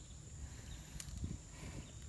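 Quiet open-air ambience: a low rumble and a steady high-pitched whine. About a second in comes a sharp click, followed by a soft knock.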